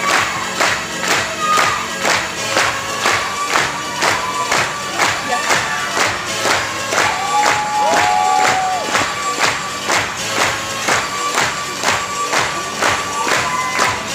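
Recorded dance music with a steady, fast beat playing loudly, with the audience's crowd noise under it.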